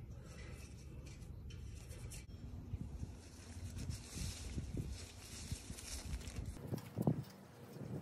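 Wisteria vine and leaves rustling as they are worked loose by hand from a chain-link fence, with small irregular clicks and rattles from the wire mesh.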